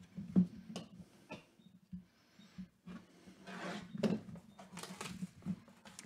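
Plastic shrink-wrap being picked at and torn off a cardboard trading-card hobby box: scattered crinkles, scratches and small clicks under the fingers, over a faint steady hum.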